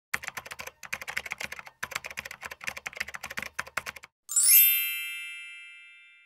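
Title-intro sound effects: rapid keyboard-typing clicks in three runs for about four seconds, then a bright chime with a quick upward sweep that rings and slowly fades away.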